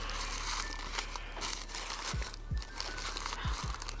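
Tissue paper and crinkle-cut paper shred rustling and crinkling as hands unwrap a wooden bowl, with a few soft low thuds in the second half.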